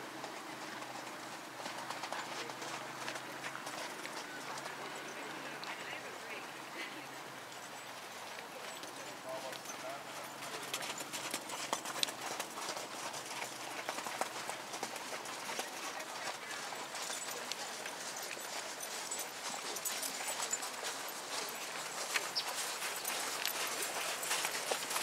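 Horse's hoofbeats at a trot on sand arena footing, a run of soft rhythmic thuds that become clearer and sharper in the second half.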